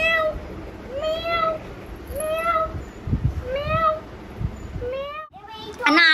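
Woman's voice repeating one short sung call about once a second, each call rising and falling in pitch, a playful chant to a baby.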